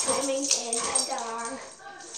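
A child's voice making wordless sing-song sounds, rising and falling in pitch.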